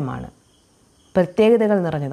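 A woman talking, with a short pause of near silence about half a second in before she goes on speaking.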